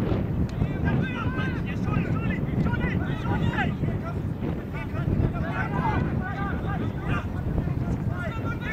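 Wind rumbling steadily on the microphone, with voices shouting at a distance throughout.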